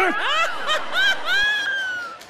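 Loud, high-pitched laughing in quick short bursts, ending in one long squealing note.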